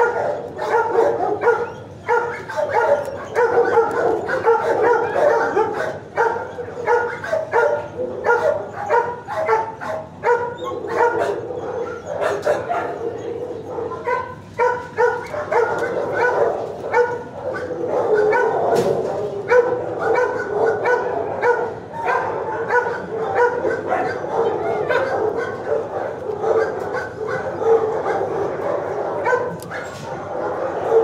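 Shelter dogs barking continuously, with yips mixed in, the barks overlapping without a break.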